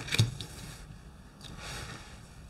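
Tarot cards being laid down and slid across a wooden table top: a light tap near the start, then two soft brushing swishes, one in the first second and one near the end.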